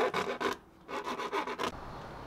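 Hand file rasping back and forth in a drilled hole in a thin plastic container lid, enlarging the hole to size. A quick series of strokes, with a brief pause about half a second in.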